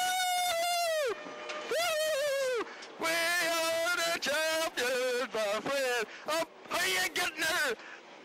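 Two men whooping and yelling in celebration inside a rally car's cabin: three long, high yells of about a second each, then a run of excited shouting.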